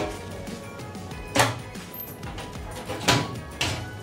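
Soft background music with held notes, overlaid by three brief handling noises from the goggles and cleaning wipe: one about a second and a half in and two close together near the end.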